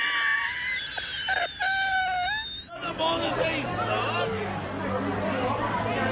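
Audio from meme clips: two sustained high-pitched notes in the first few seconds, then after an abrupt cut, the chatter and shouting of a crowd in a busy room over a steady low hum.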